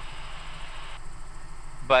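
Steady low drone of a Robinson R66 turbine helicopter in cruise flight, heard from inside the cabin.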